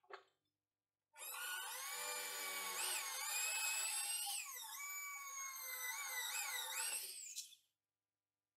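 Corded electric drill boring a hole through a thin iron plate. The motor whine starts about a second in and dips in pitch several times as the bit bites and loads the motor, then winds down near the end.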